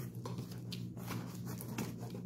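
Faint rustling and handling noises as a cardboard shipping box is picked up and held, over a steady low hum.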